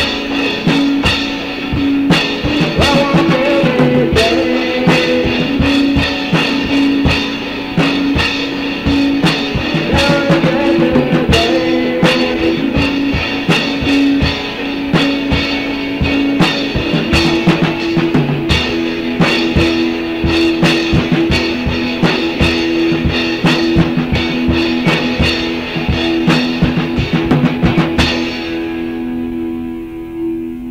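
Rock music on drum kit and guitar: busy drumming over held guitar notes. Near the end the drums stop and the guitar keeps ringing.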